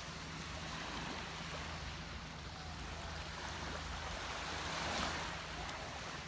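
Small waves lapping and washing up onto a sandy beach, a steady wash that swells loudest about five seconds in.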